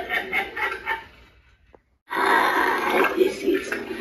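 Cauldron Creep Halloween animatronic playing its recorded spooky voice and sound effects through its speaker. The sound fades about a second in and cuts to dead silence with a single click, then starts again near the middle.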